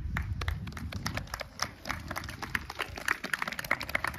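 Audience applauding, irregular hand claps with individual claps distinct rather than a dense roar, as the show's music ends.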